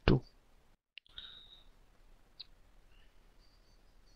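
One loud computer click right at the start, from the typing and clicking in the branch dialog, then quiet room tone with a few faint, high chirps.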